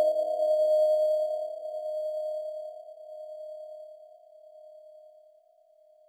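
Ringing tone of a struck object, a physically simulated deformation sound, dying away with a slow wavering until it fades out about five seconds in.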